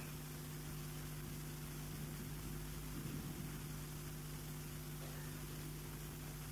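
Steady background hiss with a low electrical hum, and a faint brief rustle about three seconds in; no speech.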